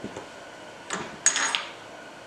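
Steel tool holders clinking against each other as one is picked up: a small click about a second in, then a short run of bright, ringing metal-on-metal clinks.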